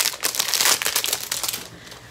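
Clear plastic packaging bag crinkling as a small cardboard box is pulled out of it: a dense run of crackles that dies down near the end.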